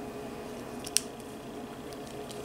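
A single sharp plastic click about a second in as an LG Tone Free earbud is released from its magnetic dock on the neckband, with a few fainter handling ticks over a faint steady hum.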